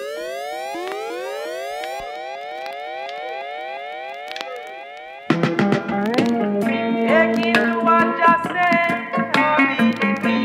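Sound-system dub siren effect: a repeating rising whoop, about two and a half sweeps a second, fading away. About five seconds in, a reggae tune drops in suddenly with plucked guitar-like chords.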